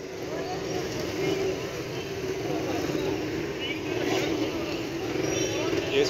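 Busy street traffic: motorcycle and auto-rickshaw engines running close by, growing slightly louder, with background voices of people in the street.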